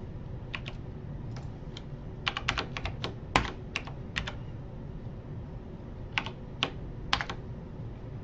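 Typing on a computer keyboard in short runs of keystrokes: a quick burst of about a dozen keys in the middle, then a few more near the end, over a low steady hum.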